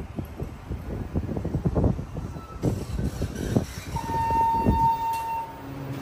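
TK Elevator Endura hydraulic elevator arriving and opening its doors, with an uneven low rumble and scattered thumps. About four seconds in comes a single steady electronic chime, held for about a second and a half.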